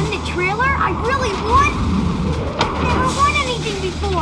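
A boy's high-pitched, excited voice, rising and falling in pitch, over a steady low rumble.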